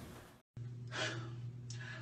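A person's breath, a soft sigh-like intake about a second in, over a steady low hum. Just before it, a fading hiss cuts off into a moment of silence.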